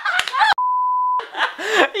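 A censor bleep: one steady, pure beep tone lasting about two-thirds of a second, starting a little over half a second in, with everything else muted under it. Around it, excited laughing and shouting.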